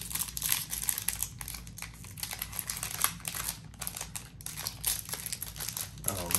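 Yu-Gi-Oh booster pack's foil wrapper crinkling in the fingers as it is torn open, a dense, irregular crackle.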